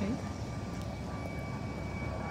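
Steady outdoor background rumble with a faint, steady high-pitched tone above it.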